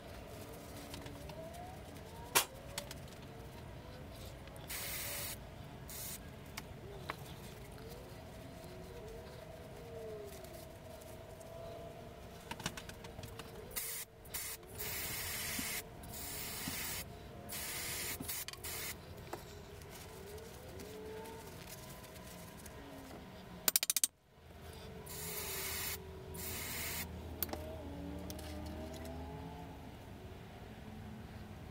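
Aerosol spray can squirted in several short bursts of hiss onto small brake master cylinder parts, with a sharp click early on and a loud knock about two-thirds of the way through.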